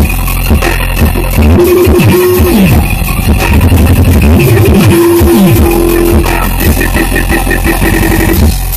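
Loud live electronic dance music played on synthesizers and drums: a repeating phrase of falling bass sweeps with a held synth note over a steady heavy bass.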